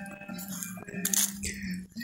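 Footsteps crunching and scuffing on dry, leaf-strewn dirt, with a low steady hum underneath.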